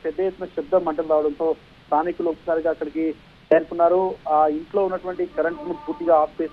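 Speech only: a man reporting steadily in Telugu, in short phrases with brief pauses.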